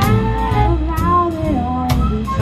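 Live jazz band playing: drum kit and cymbal strokes under a held, gently bending melody line.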